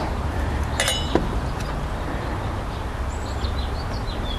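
A small metallic clink a little under a second in, with a lighter click just after, as a stripped wire end is worked under the screw terminal of a car-fuse holder. A steady low outdoor rumble runs underneath.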